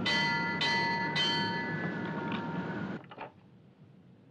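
Ship's crow's-nest warning bell struck three times in quick succession, about half a second apart, each strike ringing on and fading away about three seconds in. Three strokes are the lookout's signal for an object dead ahead.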